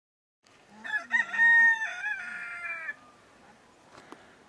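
A rooster crowing once. The crow starts about a second in, runs for about two seconds in several joined notes with a long held middle, and falls off at the end.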